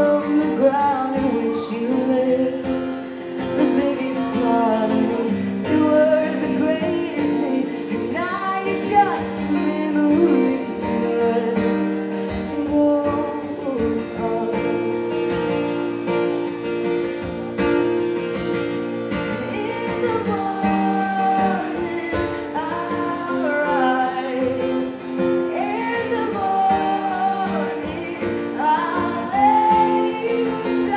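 Live acoustic song: a woman singing a melody into a microphone over a steadily played acoustic guitar, both amplified through the venue's sound system.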